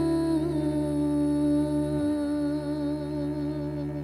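A woman's voice sings one long held note with vibrato in a live band performance, over a steady low drone whose lowest part drops out about halfway.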